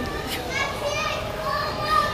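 Children's voices at play, with chatter and calls and a toddler's voice close by.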